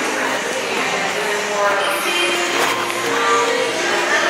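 Hubbub of a busy indoor public space: other people's voices talking in the background over a steady room din.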